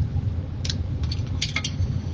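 A few short, light clicks and rustles of materials being handled on a work table, about a second in and again a little later, over a steady low hum.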